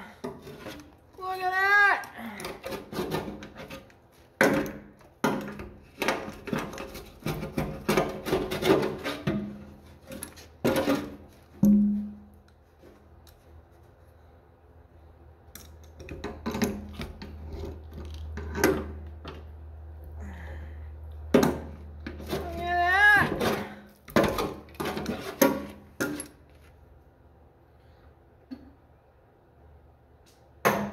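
Hand tools scraping and clicking on a tractor's steel fuel tank while a dry-grass mouse nest is pulled out, then a wrench clinking on the tank top; irregular knocks and rasping rubs throughout. A short wavering pitched call sounds twice, just after the start and about 23 seconds in.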